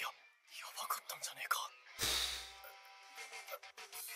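Anime soundtrack playing back: a character's voice speaking softly over background music, then a sudden deep hit about halfway through as the music carries on.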